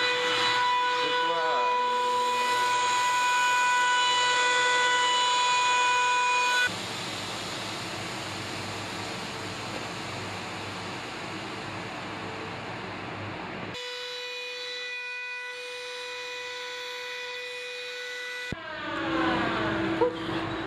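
Woodworking shop machines running: a steady high mechanical whine. About seven seconds in it gives way abruptly to an even rushing noise, and after about seven seconds more the whine returns, fainter.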